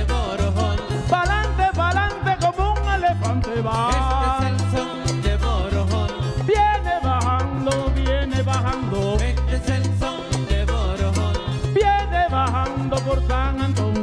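Live son music from a small band: acoustic guitar and a scraped güiro over a steady repeating bass line, with a bending melodic lead line.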